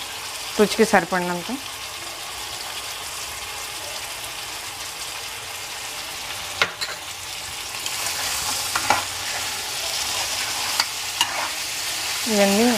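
Crab pieces sizzling in hot oil in a pan on a gas stove while a steel spoon stirs them, with a sharp knock of the spoon against the pan about six and a half seconds in. The sizzling grows louder over the last few seconds as the stirring picks up.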